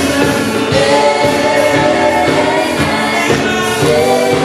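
Live gospel music: several singers holding long notes in harmony, backed by keyboard and guitar.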